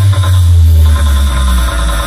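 Electronic dance music played very loud through a DJ sound-box system, carried by a deep held bass note that cuts off just before the end.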